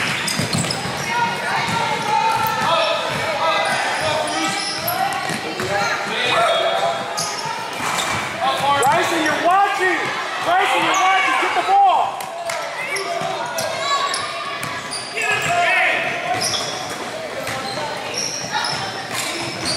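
A youth basketball game in a large, echoing gym: a basketball bouncing on the hardwood court under a constant babble of voices from spectators and players.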